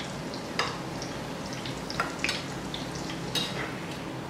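Gram-flour fafda strips deep-frying in hot oil in a kadhai, a steady sizzle, with a few sharp clicks of a steel slotted spoon against the pan as the strips are turned and lifted out.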